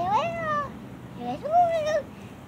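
A kitten meowing twice, each meow drawn out and rising then falling in pitch.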